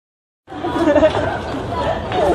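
People talking over one another, starting about half a second in.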